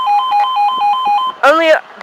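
Level crossing warning alarm: a two-tone sounder switching rapidly back and forth between two pitches, warning that the crossing is closed for an approaching train. It cuts off about 1.3 s in, and a recorded voice warning begins just after.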